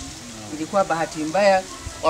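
A woman's voice speaking a few short syllables over a steady background hiss.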